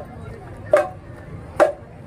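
Marching drum band playing unison drum strokes: two sharp hits, about three-quarters of a second in and again near the end, over a low background murmur.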